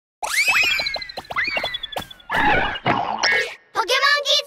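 Cartoon sound effects: two springy boings that sweep upward in pitch, one near the start and one about a second and a half in, with a scatter of quick clicks and a run of short, high twinkling notes. A noisy burst comes about halfway through, and a voice-like sound starts just before the end.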